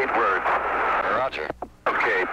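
A man's voice over a narrow-band air-to-ground radio link, with a short break near the end before the talk resumes.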